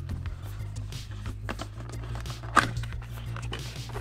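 Cardboard product box being handled and opened: the box slid out of its sleeve and the lid flipped open, with soft rustles and clicks and a sharper knock about two and a half seconds in, over steady background music.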